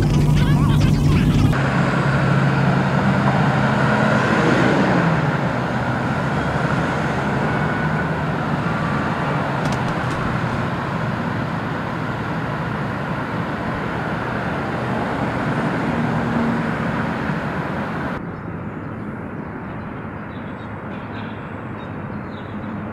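Street traffic noise: a steady rush of passing vehicles, with one going by in a falling pitch about five seconds in. The sound drops to a quieter background near the end.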